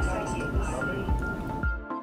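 Background music with a steady beat over a dense murmur of many overlapping voices: the multi-talker babble noise of a speech-in-noise hearing test. Both cut off suddenly near the end.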